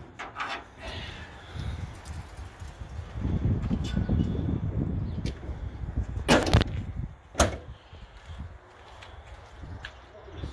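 The steel hood of a 1965 Ford F250 pickup being unlatched and raised, with a sharp metal clank about six seconds in and a lighter one about a second later.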